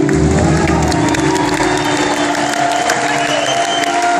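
Live band music with held notes and a deep bass note in the first second or so, over an audience clapping and cheering.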